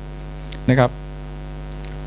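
Steady electrical mains hum running through the microphone and sound system, with one short spoken word a little under a second in.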